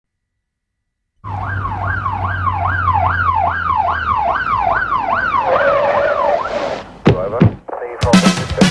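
Police car siren wailing in quick sweeps, about three a second, starting suddenly after a second of silence; its sweeps dip lower and fade near the end. Two sharp hits follow about seven seconds in.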